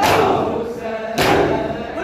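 A crowd of men doing matam, striking their chests in unison about once every 1.2 seconds, twice here, under a noha chanted by many voices.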